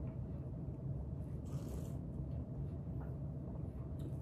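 Low steady room hum with a faint soft rustle about one and a half seconds in.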